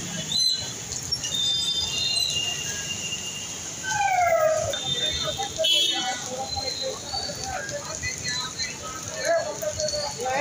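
Busy roadside street noise: several people talking amid traffic, with short high-pitched beeps now and then.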